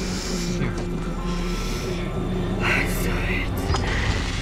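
Dramatic film score of sustained low droning tones, with indistinct, muffled voices and short breathy hisses over it.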